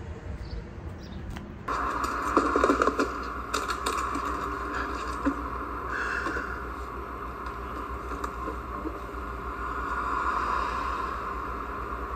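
Film soundtrack played from a television, starting suddenly about two seconds in: a cello being bowed, heard as a steady, scratchy sound without clear notes.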